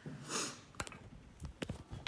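A camera being grabbed and set down on a wooden surface. A short breathy rush comes first, then a few sharp clicks and knocks from the handling near the middle and at the end.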